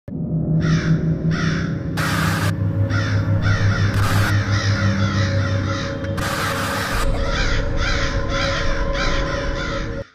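Crows cawing over and over above a low, steady music drone, with three short bursts of hiss about two, four and six seconds in.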